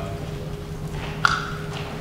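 Chalk striking a blackboard: one sharp tap about a second and a quarter in, with a brief ring after it, over a steady low room hum.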